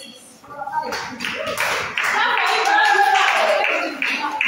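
A group of people clapping, with voices over the applause. It starts about a second in and grows louder about two seconds in.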